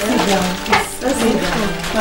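Women's voices: short exclamations and chatter, some overlapping, that the recogniser did not write down as words.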